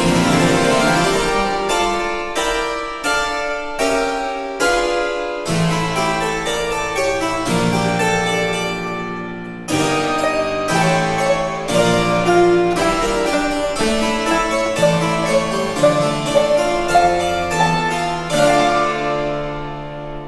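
Baroque harpsichord music from a sampled virtual harpsichord, a quick run of plucked notes and chords. A lower bass line comes in about five seconds in.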